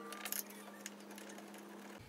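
Faint clicks and rustles of hands working a metal bracket and wiring in a vehicle cargo area, mostly in the first half second, over a steady low hum.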